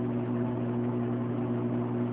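Steady low electrical hum from aquarium equipment, unchanging throughout.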